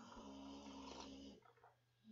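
Faint, low snoring, stopping about a second and a half in.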